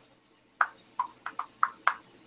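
Six short, sharp clicks within about a second and a half, the sound of working a computer's input controls while drawing digitally.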